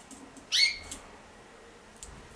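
A single short, high-pitched animal call about half a second in, rising sharply and then held briefly.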